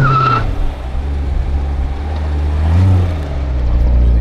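A Chevrolet Corvette's V8 engine idling, revved briefly at the start and again about three seconds in, each time the pitch rising and falling back to idle.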